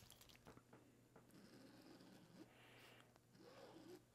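Near silence, with the faint scratch of a fine-tip Sharpie marker drawn along a clear quilting ruler on cotton fabric, and a few faint ticks.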